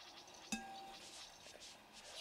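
A single faint metallic clink about half a second in, ringing briefly with a clear tone before dying away, over quiet room noise.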